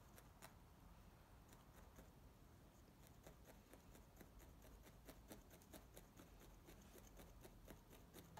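Faint, irregular ticks, a few a second: a felting needle repeatedly stabbing wool roving into a foam felting pad.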